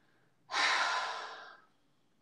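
A man's breath out, a single sigh of about a second that starts suddenly and fades away.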